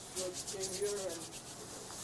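Police body-worn camera rubbing against the wearer's uniform as he moves: a quick run of scratchy rubs and rustles that thins out near the end, with faint voices underneath.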